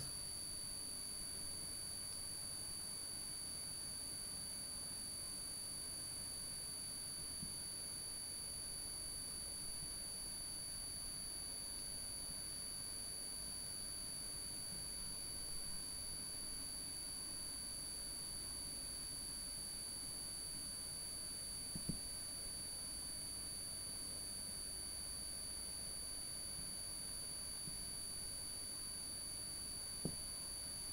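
Quiet room tone: a steady faint high-pitched whine over hiss, with a few faint taps of a marker on a whiteboard, the clearest about two-thirds of the way through.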